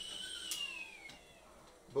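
Stovetop kettle whistling, with steam forced out through the spout cap: a steady high whistle that slides down in pitch and fades away about a second in.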